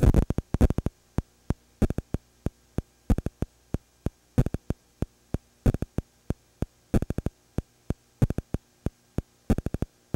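The soundless track of a silent film transfer: a faint steady mains hum broken by sharp clicks, several a second in uneven clusters.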